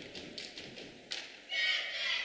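A basketball bouncing a few times on a hardwood gym floor as a free-throw shooter dribbles before his shot, with a low gym murmur that swells near the end.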